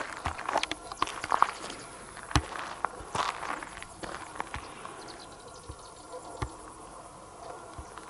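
Footsteps and rustling handling noises: irregular soft knocks and scuffs over the first three seconds or so, then only a few scattered clicks over a quiet background.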